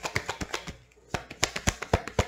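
Tarot deck being shuffled by hand: a quick, even run of card clicks, about ten a second, that stops briefly about a second in and then resumes.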